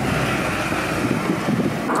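Steady rushing wind noise with no distinct engine note.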